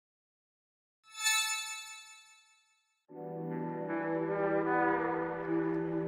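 Logo intro sound effect: a bright chime rings out about a second in and dies away, then from about three seconds in a low, held chord with many overtones swells and sustains.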